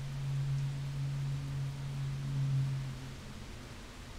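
Steady low electrical-sounding hum over a faint hiss of room noise, the hum fading out about three seconds in.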